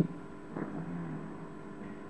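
Quiet room noise with faint sounds of a marker writing on a whiteboard.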